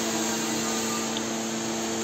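Electric machine motor running in a workshop with a steady hum of several even tones that does not change.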